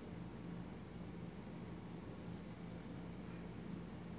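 Quiet room tone with a steady low hum, and one faint, brief high-pitched whistle about two seconds in.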